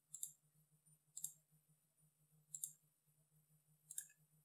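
Computer mouse clicking: four faint, sharp clicks roughly a second apart, each a quick press-and-release pair, over a faint steady low hum.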